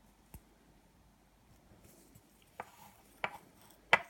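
Tweezers clicking and tapping as they are handled: one faint click near the start, then three sharp clicks in the second half, the last the loudest.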